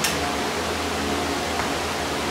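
A steady rushing background noise with a faint low hum, like a fan or air-handling unit running.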